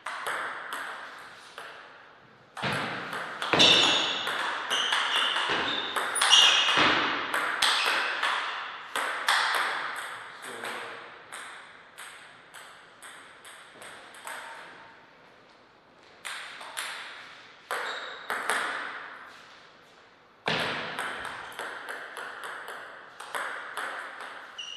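Table tennis ball struck by paddles and bouncing on the table in quick rallies: runs of sharp clicks, with quieter pauses between points.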